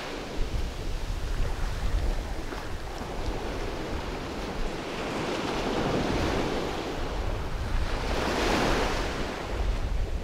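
Ocean surf breaking and washing up a sandy beach, with wind buffeting the microphone as a low rumble. A wave's wash swells louder near the end.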